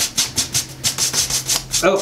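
Dry bristle paintbrush scrubbing fast back and forth across a painted board, about five strokes a second. The brush is nearly out of paint, which is what allows the quick strokes of dry brushing.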